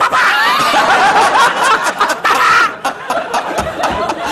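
Studio audience laughing loudly, easing off briefly about three-quarters of the way through.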